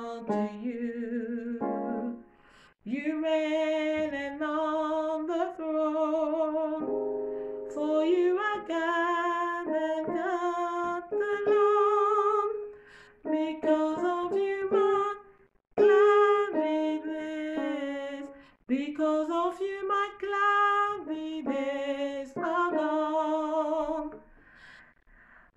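A woman singing an alto harmony line for the verse of a gospel worship song. She sings in phrases of a few seconds with short breaks between them and vibrato on the held notes.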